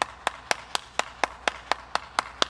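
One person clapping their hands at a steady, even pace of about four claps a second.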